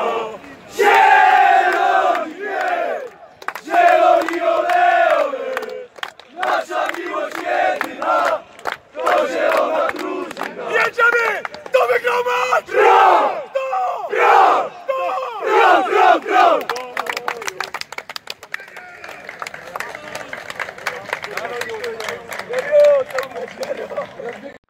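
A team of footballers chanting and shouting together in a victory huddle: many men's voices in loud unison. After about eighteen seconds the chant breaks up into scattered calls and voices.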